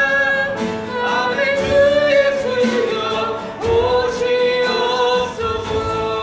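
Live worship music: several singers in a praise song, held notes with vibrato, accompanied by acoustic guitar and keyboard over a steady beat.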